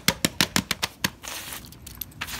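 A quick, even run of sharp clicks, about six a second, as small toys are handled and gathered up. It stops about halfway through and gives way to a short rustle.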